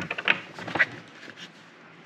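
A quick run of light clicks and taps in the first second as foam RC tires on plastic wheels are handled and set on a tabletop, then quiet room tone.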